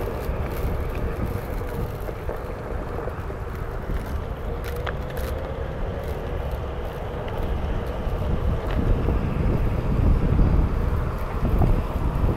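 Wind rushing over the microphone of a camera carried by a rider on a moving Onewheel electric board, with a faint whine that rises slightly in pitch about halfway through.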